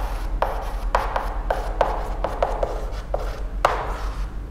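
Chalk writing on a blackboard: a string of about a dozen short, irregular taps and scrapes as numbers and brackets are written, over a steady low hum.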